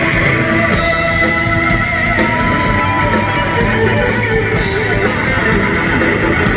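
Live blues-rock band playing loudly, led by a Fender Stratocaster electric guitar with long held notes that waver in pitch, over bass and drums.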